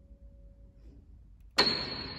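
Grand piano: a quiet held note fades away within the first second, then a single high note is struck hard and loud about one and a half seconds in and rings on.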